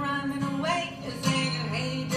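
Acoustic guitar strummed while a woman sings.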